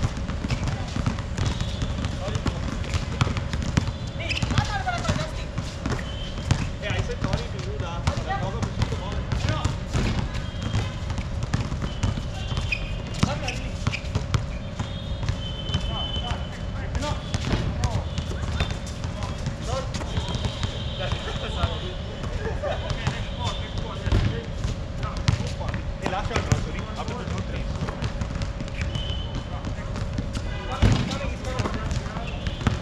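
Outdoor pickup basketball game: the ball bouncing on the court in repeated sharp knocks, with players' voices calling out now and then, over a constant low rumble and a steady faint hum.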